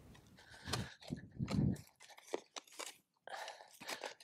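A steel spade digging into dry, compacted field soil, with a series of crunches and scrapes as the blade cuts and lifts the earth.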